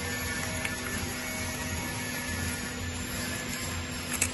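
Automatic flexo printer-slotter-die-cutter for corrugated carton board running: a steady mechanical hum with constant tones and a low pulse repeating about twice a second.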